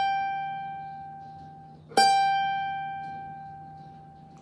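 Rozini student-model cavaquinho with single G notes plucked and left to ring: one note fading at the start and a second pluck about two seconds in that decays slowly. The notes are being checked against a clip-on tuner, which reads them in tune.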